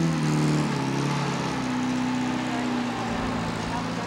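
Fiat 8V Zagato's two-litre V8 engine pulling away at a steady note after a quick rev, easing slightly in pitch and fading a little as the car drives off.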